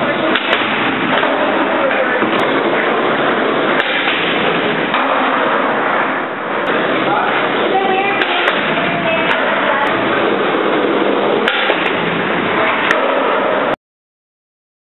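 Steady, loud din of indistinct voices and skateboard wheels rolling on concrete in a parking-garage skatepark. It cuts off suddenly near the end.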